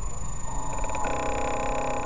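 A radio-controlled model boat running on the water, heard from its own deck as a steady low rumble with a faint high whine. About half a second in, a held pitched tone rich in overtones, a horn or a call, sets in, grows fuller, and cuts off suddenly near the end.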